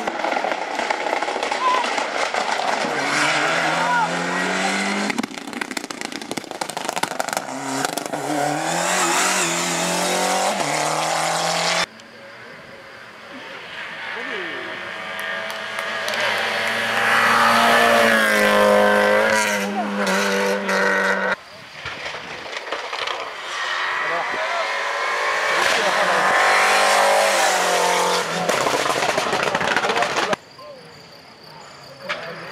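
Rally cars driven hard along a tarmac stage, engines revving up and dropping through gear changes as they pass. The sound cuts off abruptly twice, about 12 and 21 seconds in, as one car's run gives way to the next.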